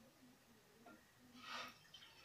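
Near silence: quiet room tone, with a faint, brief noise about a second and a half in.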